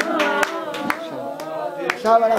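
Hands clapping in a steady rhythm, about two claps a second, alongside voices singing.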